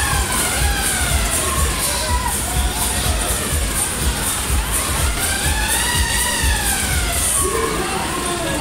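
Himalaya fairground ride running, with loud ride music on a pulsing bass beat and riders shouting and cheering. Long cries rise and fall twice, at the start and again about five seconds in.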